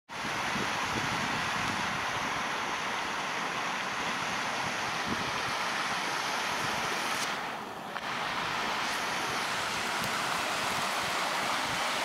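Steady rushing outdoor noise, like wind or running water, dipping briefly about seven and a half seconds in.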